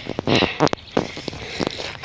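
Irregular footsteps and rustling over dry grass and leaves, with sharp knocks from the camera being handled while moving.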